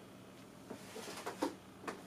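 A few faint, short clicks and rustles about half a second apart, the sound of small handling movements near the microphone, over a faint steady hum.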